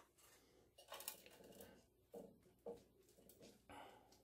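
Faint rustle and patter of loose coco fiber substrate poured from a plastic cup into a plastic enclosure, in a few short spills.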